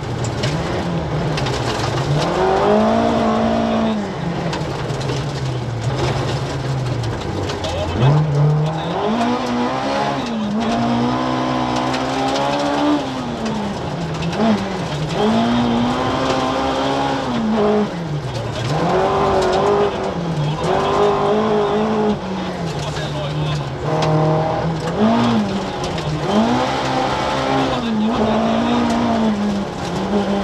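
Ford Escort RS 2000's Cosworth BDA twin-cam four-cylinder rally engine heard from inside the car, revving up through the gears and falling back again and again as the driver lifts and brakes for corners. Gravel and road noise run underneath.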